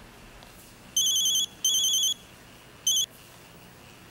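Mobile phone ringing with a high, trilling electronic ringtone: two half-second rings and then a brief third, signalling an incoming call.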